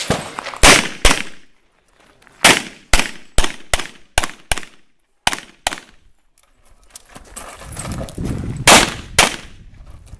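9mm pistol fired rapidly in pairs, about a dozen sharp shots with each pair half a second or less apart, and a gap of about three seconds between the sixth pair and the last pair.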